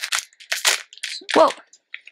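Plastic snack wrapper being torn open and crinkled by hand in a few short rustling bursts.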